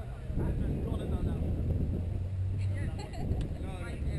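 Indistinct, distant voices of people on and around the court, over a steady low rumble, with one brief click a little after three seconds in.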